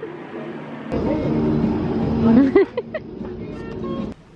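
Yellow Basel BLT tram running close by at a stop: a loud low rumble with a steady electric hum starts suddenly about a second in, with some rising and falling squeals and short tones over the second half.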